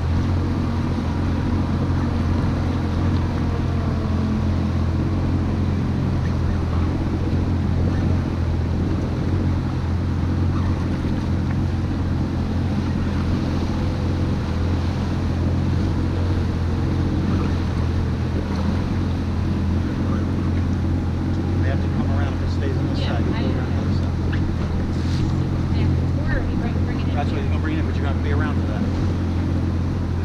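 Yamaha jet boat's engine running steadily at low speed, a constant low hum, with water and wind noise over it.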